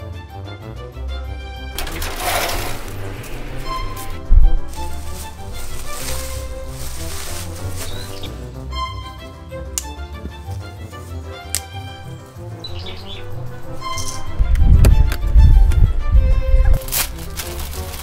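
Background music with short repeating notes. Bursts of noise come through it, and the loudest is a low rumbling stretch of handling noise near the end.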